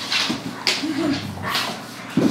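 Two dogs play-fighting, a German shepherd and a black dog, making short growls and snarls in quick succession, with a brief whine-like rise and fall about a second in.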